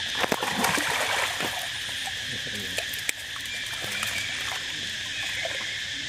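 Water splashing and lapping as macaques swim, busiest in the first second and a half, over a steady high-pitched drone of insects.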